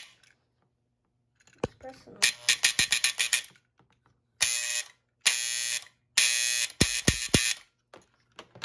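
Electric buzzing from a Lionel operating dump car's mechanism, energised from its push-button controller, in about five separate bursts of roughly half a second to a second each. One burst has a rapid flutter, and three low knocks come near the end.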